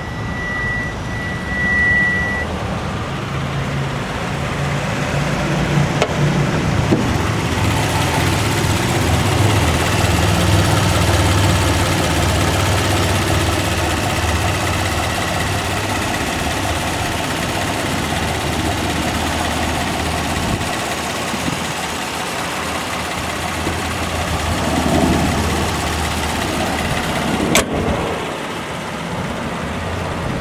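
Hyundai Santa Fe's 3.3-litre GDi V6 idling with a steady low hum. A high steady beep sounds for the first two seconds, and there is a single sharp click near the end.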